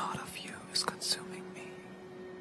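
A voice whispering a few words, breathy and unvoiced, over a low steady hum.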